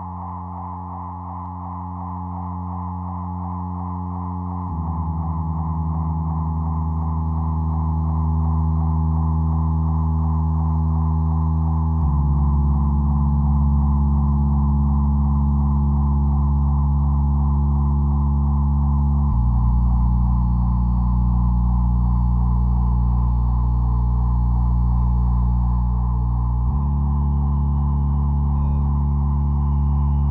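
Live ambient electronic music: sustained low drone chords that shift to a new pitch about every seven seconds, under a steady fluttering mid-range tone. It swells in volume over the first several seconds, with no beat.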